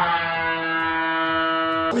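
Game-show style 'wrong answer' buzzer sound effect: one steady, buzzy tone held for nearly two seconds, cutting off abruptly.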